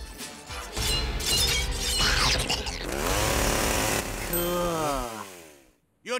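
Cartoon transformation sound effects as a small lizard mutates into a spiky monster: a dense, noisy rush over a low rumble, with a pitched sound that dips and then rises. It fades away shortly before the end.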